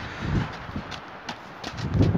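Icy snow crunching in a few short, crisp clicks over a steady hiss.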